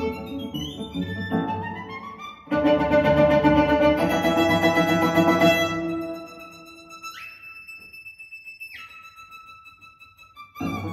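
Recorded music led by a violin, played back over Vienna Acoustics Haydn Grand Signature loudspeakers. A sudden loud full passage comes in about two and a half seconds in. The music then fades to a long high held note that slides up and later slides back down.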